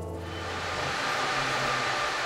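Guitar music fading out, giving way to a steady, even rushing noise: the background ambience of a vehicle workshop hall.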